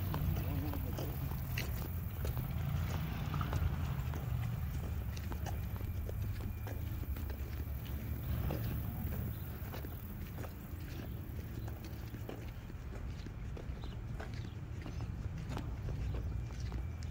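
Wind buffeting a phone's microphone, giving a steady low rumble, with scattered light taps of footsteps from someone walking.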